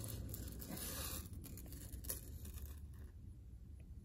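Faint rustle of a metal chain necklace being lifted and handled, with a few faint clicks, fading away towards the end.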